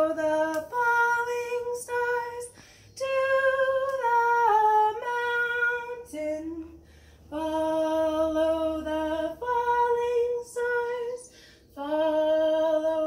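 A woman singing a slow melody unaccompanied, in long held notes, its phrases broken by short pauses.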